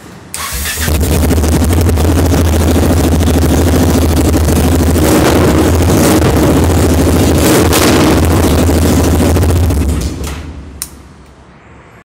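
Yamaha XT660Z Ténéré's single-cylinder engine started on the button, catching within the first second. It runs steadily and loud with its exhaust removed, then is switched off about ten seconds in.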